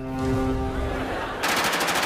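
A held music chord, broken about one and a half seconds in by a rapid burst of automatic rifle fire from several guns.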